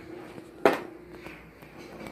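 A die thrown onto a board game: one sharp click as it lands about two-thirds of a second in, followed by a few faint ticks.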